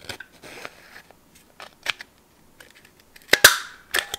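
A paper corner punch pressed once, giving a loud sharp snap as it cuts a corner from a scrap of memo paper, a little before the end. Light clicks and paper handling come before it.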